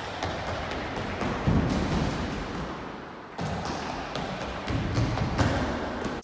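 Quick thudding footsteps of a man sprinting across a sports hall floor, over background music. The sound breaks off and starts again about three and a half seconds in.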